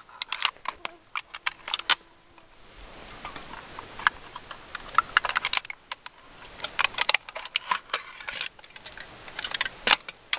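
A knife blade scraping the coating off an aluminium Pepsi can to bare the metal: quick, scratchy strokes in short bunches, with pauses between them.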